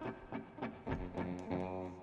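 Electric guitar playing a few soft single notes between songs, the last note held near the end.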